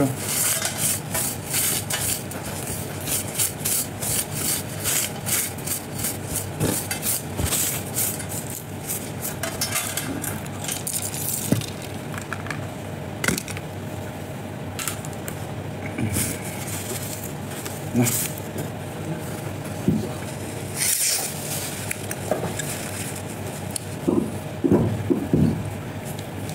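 Tableware being handled: dense rustling and scraping for the first dozen seconds, then a few light knocks, over a steady low hum.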